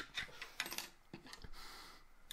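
Faint, scattered small clicks and ticks of light handling noise, with a short soft rustle about two-thirds of a second in.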